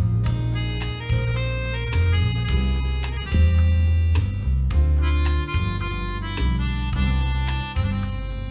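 Chromatic button accordion playing a boléro melody in held notes, backed by a band with bass guitar and regular percussion strokes.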